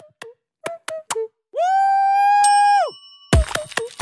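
Cartoon-style editing sound effects: a few short popping blips that drop in pitch, then one long held electronic tone that slides up at its start and down at its end, then a low thump near the end.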